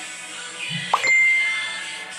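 A single bright ding about a second in, ringing on and fading within a second, over background music.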